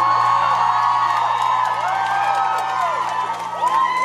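Concert crowd cheering, whooping and screaming as a rock song ends, with many high rising-and-falling screams at once. The band's last chord fades underneath early on.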